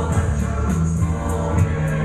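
A Georgian vocal ensemble of men and a woman sings a song live in close harmony over sustained low notes, with a light, quick ticking beat on top.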